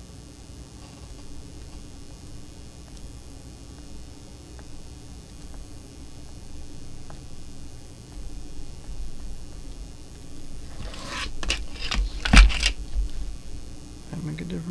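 Low steady room hum, then a short run of clicks and knocks near the end, the loudest a single sharp knock, as things are handled at a fly-tying bench.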